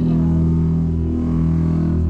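A live rock band's amplified electric guitars and bass hold a steady, loud low drone, with no drums or vocals.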